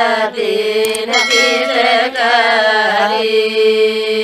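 A group of women's voices singing a Lambadi (Banjara) Holi folk song in chant-like unison over a steady drone note. About three seconds in, the singing settles onto one long held note.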